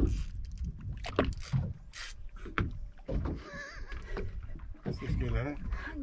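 Water slapping against a boat hull with wind on the microphone and a few short knocks, while a person's voice makes wavering strained sounds a little past the middle and again near the end.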